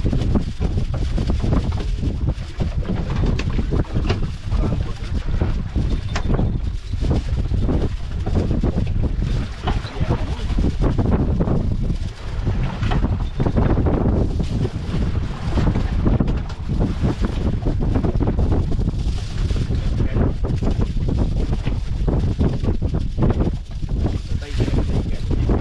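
Strong wind buffeting the microphone on an open fishing boat at sea: a loud, gusting low rumble that swells and dips without letting up.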